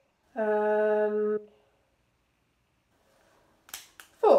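A woman's voice holding one word on a flat, sung-out note for about a second, then quiet. Near the end, two sharp snips of scissors cutting jute string.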